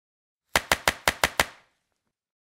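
A sound-effect sting of six sharp, evenly spaced clicks in quick succession, about six a second, lasting about a second.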